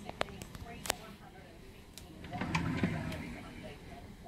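A few sharp clicks, then a wooden desk drawer sliding open with a rough rumble about two and a half seconds in.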